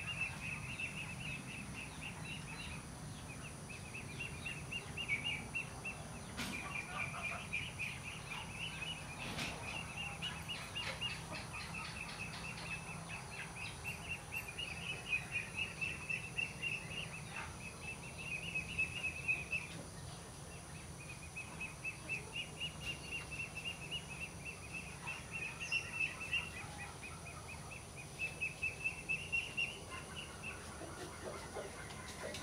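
Outdoor wildlife chirping: a high, rapid trill of evenly spaced chirps that runs for several seconds at a time with short pauses. A faint steady low hum sits underneath.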